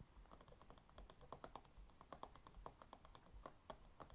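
Faint, irregular light clicking, several clicks a second, from fingers and long fingernails fidgeting and tapping together.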